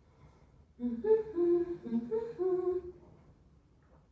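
A woman humming a short tune of several held notes, starting about a second in and lasting about two seconds.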